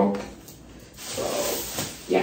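Black plastic garbage bag rustling and crinkling as a piece of clothing is stuffed into it, starting about a second in.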